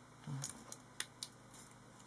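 A small handheld flashlight being handled and put down among costume jewellery on a table. A short low knock comes near the start, then three or four sharp clicks, the strongest about a second in.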